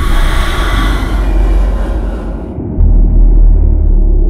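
Deep rumble with a hissing wash over it that dies away about two and a half seconds in, after which the low rumble swells louder.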